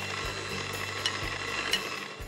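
Electric hand mixer running steadily, its beaters churning thick chocolate pie batter in a glass bowl as flour is mixed in.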